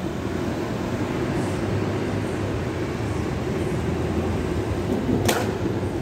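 Street traffic at a city intersection: vehicle engines running and cars passing in a steady low rumble, with a brief sharp sound about five seconds in.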